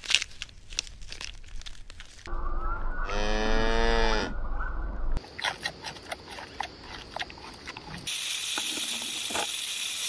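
Crunching and tearing of grazing at the start, then a cow mooing once, a long call that is the loudest sound here, about three seconds in. After it comes the sharp crunching of a giant panda chewing bamboo, and a steady hiss from about eight seconds on.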